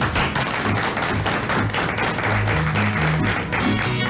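A small group applauding, a dense run of hand claps, over background music with sustained low notes.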